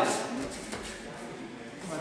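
Mostly voices in a large hall: a shouted instruction trails off at the start, then a quieter stretch of background murmur and echo, and a man's voice starts again near the end.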